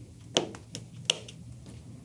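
Scissors snipping through a thick denim seam, with two sharp snips about three-quarters of a second apart and a fainter one between.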